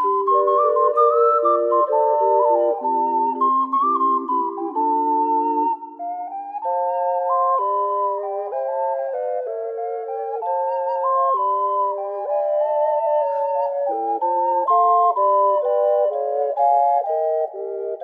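Ocarina quintet of soprano F, alto C, two alto F and bass C ocarinas playing in close, jazzy harmony, several pure-toned parts moving together. The lowest parts drop out about six seconds in and the upper voices carry on.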